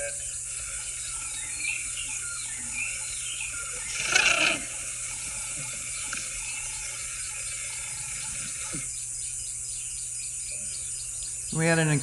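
Bush ambience: a steady high insect drone with faint bird chirps, and one loud, harsh burst of about half a second roughly four seconds in.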